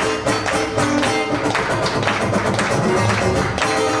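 Acoustic guitar strummed in a steady rhythm with hand claps keeping the beat, an instrumental stretch of a live gospel spiritual.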